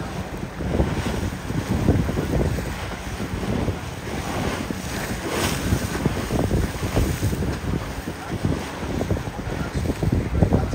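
Wind buffeting the microphone on a moving boat, with water rushing and slapping on choppy waves beneath it; the gusts rise and fall unevenly.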